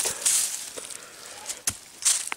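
Dry leaves and blackcurrant branches rustling as a bush is handled during pruning, with one sharp click near the end.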